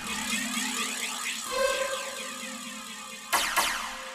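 Electronic dance music breakdown: the beat cuts out suddenly, leaving quiet sustained synth tones and swirling sweep effects. A brief whooshing sweep comes about three seconds in.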